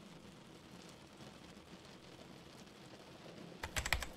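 A fast run of computer keyboard typing, a quick string of key clicks starting about three and a half seconds in. Before it there is only a faint steady hiss of rain.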